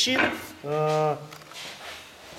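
A man's voice: the tail of a spoken word, then one drawn-out, level-pitched hesitation sound like 'ehh' of about half a second, followed by a quiet room.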